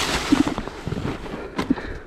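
Dirt bike tyres sliding and skidding over dry leaf litter and sticks: a crackling rustle full of small irregular snaps that fades toward the end.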